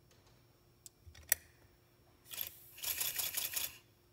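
Accucraft Ruby live-steam locomotive chassis test-running on air fed through a hose, as a check of its piston-valve timing. A sharp click a little over a second in, then a short hiss and about a second of rapid, even chuffing from the cylinders.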